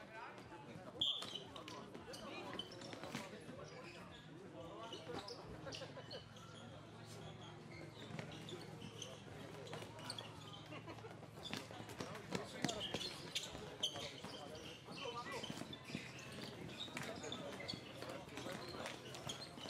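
Floorball play heard from the sideline: sharp irregular clicks of plastic sticks striking the ball and each other, and footfalls on the plastic court, under a background of players' and spectators' voices.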